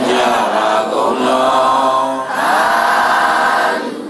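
A Buddhist congregation chanting together in unison, in long drawn-out phrases of about two seconds each with short breaks between them.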